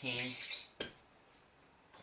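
A single sharp tap of a dry-erase marker against a whiteboard, just under a second in, as a number is written on the board.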